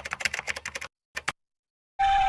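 Computer keyboard typing sound effect: a quick run of about a dozen key clicks, then two more clicks just after a second in.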